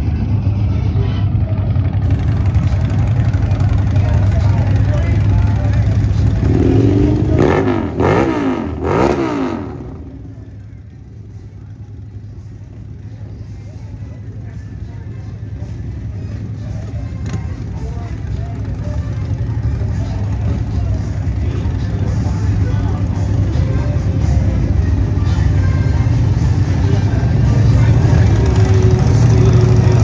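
Motorcycle engines rumbling under crowd chatter. A bike is revved quickly a few times about seven to nine seconds in, the pitch sweeping up and back down each time. The sound then drops quieter for a moment before a deep engine rumble builds again near the end.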